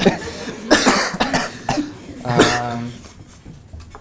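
A man coughing a few times and clearing his throat, in short separate bursts.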